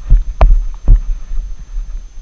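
A horse's strides picked up through a rider-mounted GoPro as rhythmic low thumps, about two a second, easing off after about a second as the horse slows.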